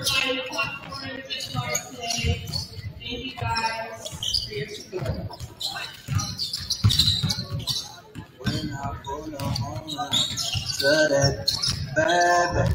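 Basketballs bouncing on a hardwood gym floor, several short thuds in irregular succession, with indistinct voices in the background.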